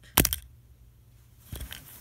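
Wooden snap mouse trap with its spring removed being set off: a sharp clatter of several quick clicks just after the start. About a second and a half in there is a softer knock and rustle.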